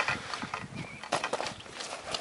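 Handling noise of a landing net and unhooking mat as a large tench is laid in the net: a sharp knock at the very start, then scattered soft knocks and rustles.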